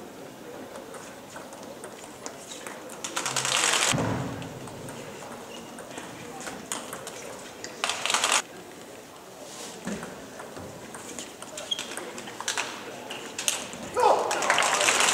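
Table tennis ball ticking off bats and the table during a doubles rally: sharp, scattered clicks with voices in the hall underneath. There are two brief louder bursts of noise, one about four seconds in and one about eight seconds in.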